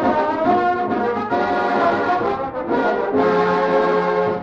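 Studio dance orchestra playing, brass in the lead, settling onto a held chord near the end. An old radio recording with no top end.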